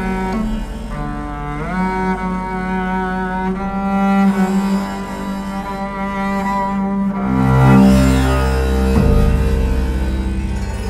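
Bowed double bass with 39 sympathetic strings, a 3D-printed, carbon-fibre Swedish harp bass, playing long sustained notes. The pitch slides up about two seconds in, and a louder, lower note comes in near the end.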